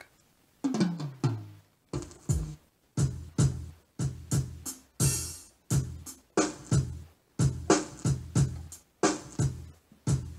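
Drum samples from the Break Kit of a Yamaha PSR-S910 keyboard, played one at a time from the keys. It is a string of separate drum hits, about two a second, starting after a short pause. Some hits fall in pitch, and a longer hissing hit comes about five seconds in.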